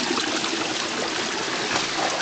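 Steady rush of Yosemite Creek's water flowing among granite boulders below Lower Yosemite Fall, with a few faint splashes.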